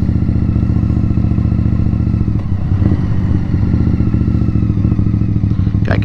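2018 Indian Scout Bobber's V-twin engine running at a steady cruise under the rider.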